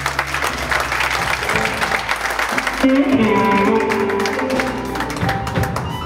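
Live blues band playing electric guitar, drums and horns, with held notes coming in about three seconds in.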